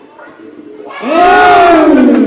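A person's loud, drawn-out shout close to the microphone, its pitch rising then falling, echoing in a large sports hall.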